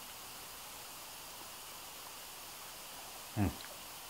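Faint steady hiss, then a short murmured "mm" of approval near the end as a bite of bratwurst patty is tasted.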